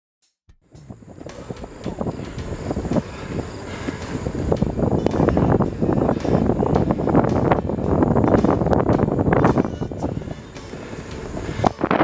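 Wind rushing and buffeting over the microphone of a camera carried on a moving bicycle. It swells to its loudest about eight seconds in and eases off near the end.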